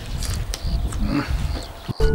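A man chewing a raw green onion at the table: irregular crunching and mouth sounds, with a short murmur about a second in.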